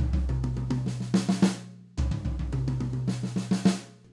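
Drum kit playing a short sixteenth-note pattern, led by the left hand, that goes around the kit from the floor tom. Each pass opens with a deep floor-tom and kick stroke, then climbs in pitch over the higher toms and snare. The pattern is played twice, each pass about two seconds long.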